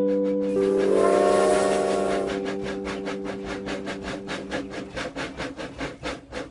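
Cartoon steam train sound effect: a steam whistle held as a chord of several tones, fading out about five seconds in, over a steady chugging of about five puffs a second.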